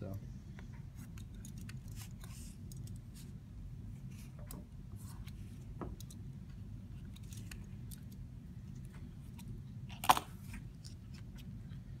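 Snap-off craft knife cutting small corners from paper covers on a cutting mat: faint scattered ticks and short scrapes over a steady low hum. There is a sharp clack about ten seconds in as the knife is set down on the mat.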